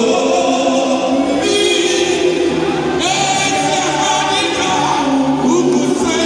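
Gospel singing by a group of voices in choir, holding long notes that waver in pitch, over a steady low accompaniment.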